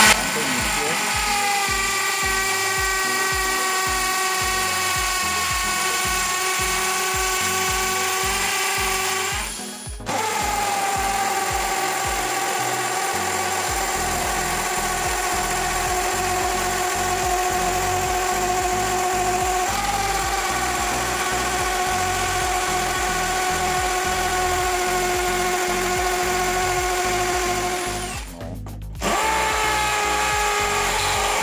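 Cordless brushless drill (Villager Fuse VPL 8120) boring a 25 mm hole into a concrete block at 2000 rpm, its motor running at a steady pitch. The sound briefly stops and picks up again about ten seconds in, and dips once more near the end. Part of it is played sped up two and a half times, which raises the pitch.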